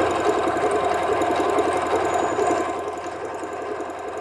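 Singer Patchwork electronic sewing machine running steadily at speed, stitching a test seam through cotton fabric to check the balance of upper and bobbin thread tension. Its rapid needle strokes ease slightly in the last second.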